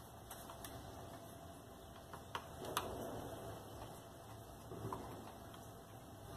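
Faint handling noise from an angle grinder being worked on by hand: a few sharp clicks and light knocks of its housing and a screwdriver, the loudest click a little under three seconds in, with soft rustling between.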